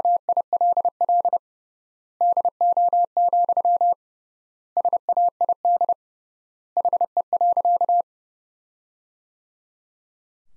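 Morse code sent as a single steady mid-pitched beep at 30 words per minute, with the dots and dashes in four word groups and long gaps between them, the last group ending about 8 seconds in. The groups spell "will do, said he.", the tail of the sentence "That will do, said he.", which is spoken just after.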